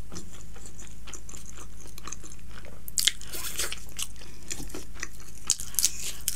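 Close-miked chewing of stir-fried chowmein noodles and vegetables, a run of wet mouth clicks with louder crunchy bursts about three seconds in and again near the end, over a steady low hum.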